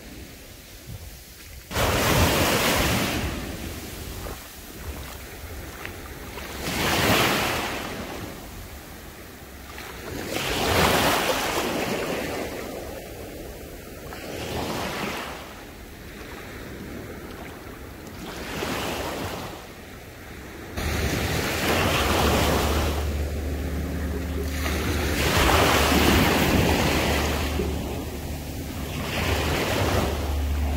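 Small sea waves washing in on a shallow sandy shore, the wash swelling and fading every few seconds. A steady low rumble of wind on the microphone joins about two-thirds of the way in.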